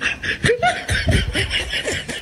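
Laughter: a run of short, irregular laughing bursts.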